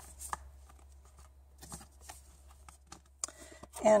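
Faint handling of a clear plastic stamp case and the paper and stamp sheets inside it: light rustles and a few small clicks, with one sharper click about a quarter second in.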